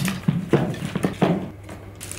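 Wooden-shafted marimba mallets clattering against one another as they are dropped by the handful into a cylindrical mallet bag: a quick run of light knocks, several a second, fading towards the end.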